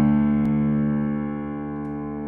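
Grand piano sustaining a full, many-note chord that slowly fades, with a faint click about half a second in.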